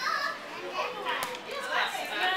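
Children's voices, high-pitched talking and calling out that overlaps, with one sharp click a little past a second in.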